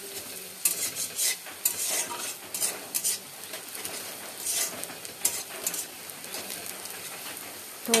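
Sliced onions and green chillies sizzling in oil in a kadai (wok), with a spatula scraping and stirring them against the pan in irregular strokes.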